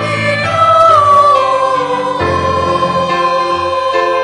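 A church choir singing a hymn or sung part of the Mass, with voices holding long notes. A slight downward slide comes about a second in, then a steady hold.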